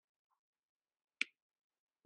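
Near silence, broken about a second in by one short, sharp click.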